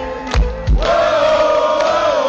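Live heavy metal band playing: a couple of drum beats, then a long held note, with a crowd in the mix.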